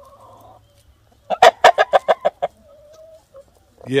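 Rooster clucking: a faint call at first, then a quick run of about nine loud clucks a little over a second in, trailing off into a soft drawn-out note.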